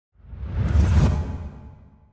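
Whoosh sound effect with a deep rumble marking an animated intro transition. It swells over about half a second and then fades away over the next second.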